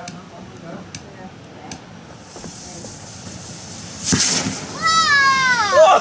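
A small butane blowtorch hisses as it is held to a pipe packed with homemade rocket fuel. About four seconds in, the mixture catches with a sudden whoosh and burns, then a high, falling, wailing cry follows near the end.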